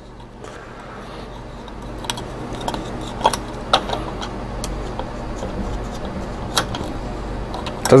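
A marker pressed hard and run around the cut inner rim of a steel pull-top cat food can, flattening the sharp metal lip: a steady scraping rub that grows slowly louder, with a few sharp metallic clicks.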